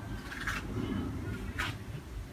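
Faint soft rubbing of a charcoal jelly cleansing ball being massaged over a wet, soapy face, with two brief hissy swishes, one about half a second in and one near the end.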